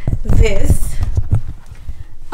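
Handling noise from a handheld camera being carried and moved: a run of irregular low thumps and knocks on the microphone, with a brief voice sound about half a second in.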